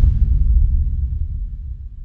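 Logo-sting sound effect: a deep boom whose low rumble fades away over a couple of seconds.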